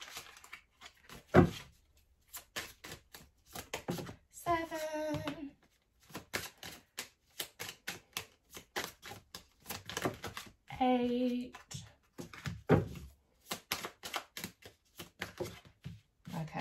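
Tarot cards being counted out and dealt from the deck onto a cloth-covered table: a run of quick, irregular card clicks and snaps.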